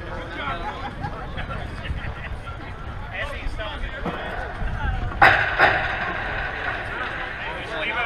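Indistinct talk of people at a softball field, with two sharp knocks close together about five seconds in.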